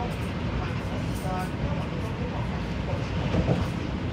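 Steady running rumble of an MTR East Rail line electric train at speed, heard from inside the car. It swells briefly near the end as another train passes close alongside.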